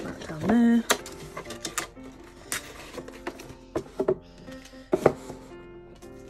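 A gift box slid aside and a paper package handled on a wooden tabletop: a few sharp knocks and light paper rustling, under soft background music with held notes. A brief vocal sound about half a second in.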